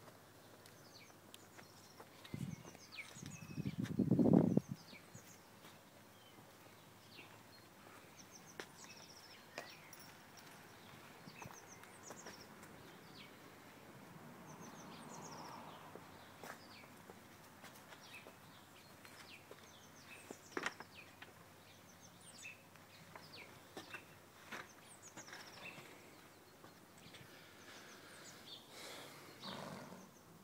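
Small birds chirping intermittently outdoors, with a brief louder rushing noise about three to four seconds in.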